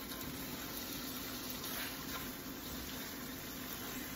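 Tomato and green-onion sauce sizzling steadily in a steel wok on a gas burner as it is stirred with a silicone spatula.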